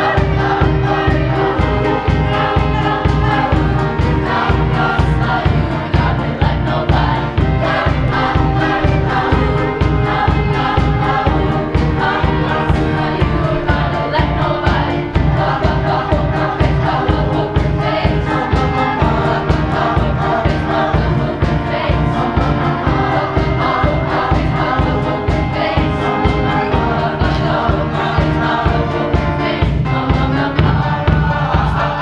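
Middle-school show choir singing together over loud accompaniment with a steady, driving beat.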